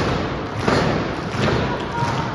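Wrestler stamping a foot on the wrestling ring's canvas-covered boards: three heavy thuds about two-thirds of a second apart.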